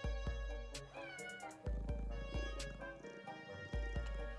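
Background music with low drum hits, and a house cat meowing once about a second in.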